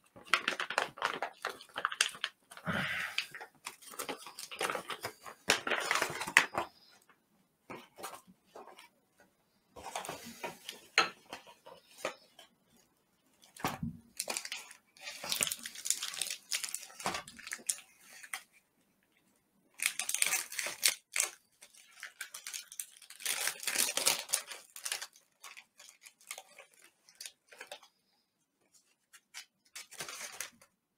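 Thick plastic MRE bag being cut open with a knife and its packets pulled out and handled: bursts of tearing, crinkling and rustling plastic with scattered clicks, broken by several short pauses.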